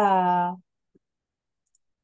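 A woman's voice holding a drawn-out syllable for about half a second, then quiet broken by a few faint clicks.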